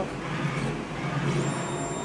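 Brother direct-to-garment printer running with a steady low mechanical hum as its platen carries the freshly printed shirt out from under the print head. A faint high whine joins near the end.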